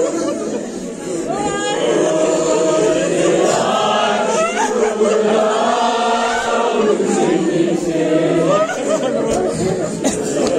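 Mourners chanting a nauha, a Shia Muharram lament, many voices singing the refrain together.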